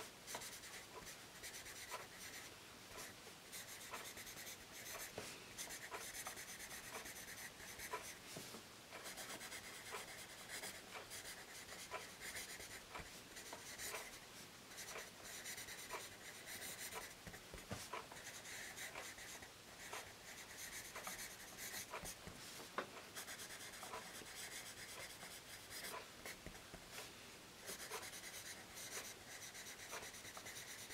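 Tombow Mono 100 B-grade graphite pencil writing cursive on paper: a faint, continuous scratching that swells and fades with each stroke, with small ticks where the point touches down and lifts.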